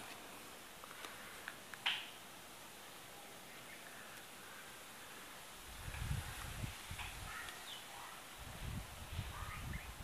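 Quiet outdoor ambience with faint, scattered bird chirps, a single sharp click about two seconds in, and a low rumble on the microphone in the second half as the camera is moved.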